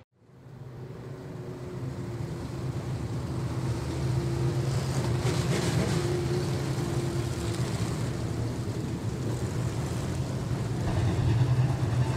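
A field of about twenty USRA stock car V8 engines running together at pace speed as the pack circles a dirt oval. The sound fades up from silence over the first few seconds, then holds steady.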